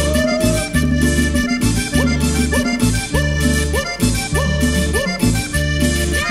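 Cumbia instrumental break: accordion leading over bass and percussion with a steady dance beat. Short rising swoops repeat about twice a second through the middle of it.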